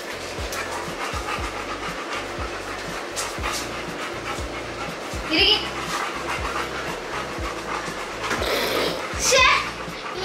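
Labrador retrievers panting during play, over background music with a steady low beat. Two short, high-pitched vocal sounds stand out, about five seconds in and again near the end.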